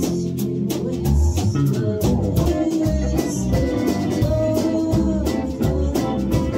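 A live rock band playing a song at rehearsal: electric guitars over a drum kit, with steady drum hits.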